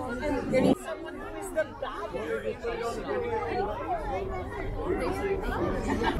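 Several people talking at once in a small outdoor group: overlapping, indistinct chatter.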